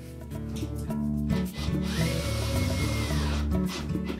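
Power drill driving a screw into a plastic washer drive hub, its motor whining steadily for about a second and a half in the second half. Background music plays throughout.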